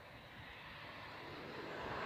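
A passing vehicle approaching, its noise growing steadily louder.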